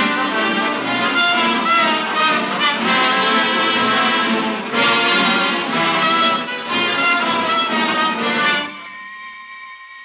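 Loud dramatic music bridge between scenes of an old-time radio drama. About nine seconds in it drops to a quieter held chord that fades away.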